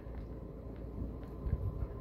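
A low, steady background rumble with no other distinct sound.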